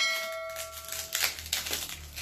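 A metal bicycle part rings with a clear tone for about a second after being knocked, then a few light clicks and rustles of handling as parts are fitted to the bicycle frame.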